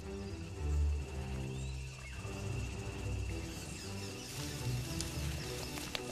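Orchestral film score plays with held low notes. A few light clicks of the ants' footsteps come near the end.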